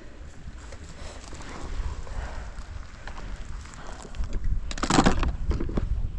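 Wind rumbling on the microphone, with rustling and handling noise as hands search through long marsh grass; a short, loud burst about five seconds in.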